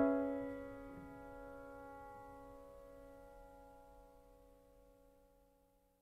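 Closing piano chord of a ballad left ringing and slowly decaying, with one soft added note about a second in, dying away to silence near the end.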